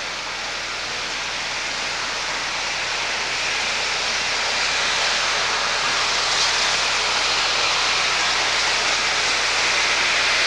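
Norfolk & Western 611 steam locomotive (J-class 4-8-4) venting steam from its cylinder cocks as it rolls slowly in: a steady hiss that grows gradually louder.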